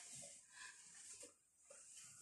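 Near silence: quiet room tone with a few faint, brief sounds.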